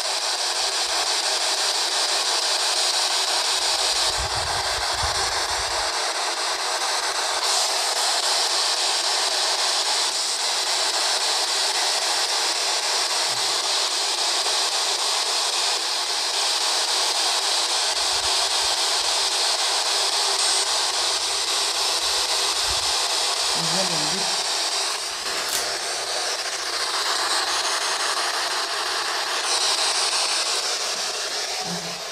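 P-SB11 spirit box sweeping through radio frequencies, giving out a steady loud hiss of static through its speaker.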